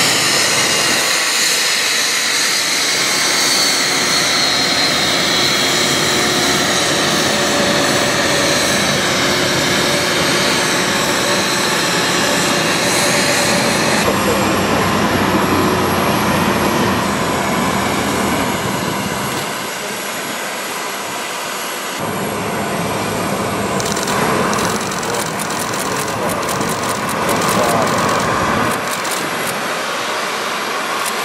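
Turbofan jet engines of a Boeing 757 (the US Air Force C-32) running on the apron: a loud, steady whine and rush whose high tone falls over the first few seconds.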